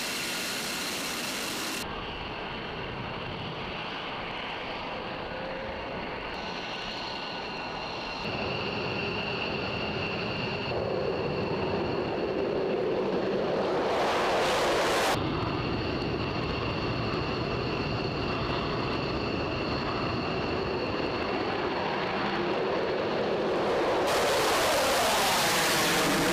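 Jet noise from F-22 Raptor fighters' Pratt & Whitney F119 turbofan engines: a continuous rush with a steady high whine over it. It swells briefly about halfway through as a jet takes off, and gets louder again near the end, where the pitch of the noise sweeps as a jet passes.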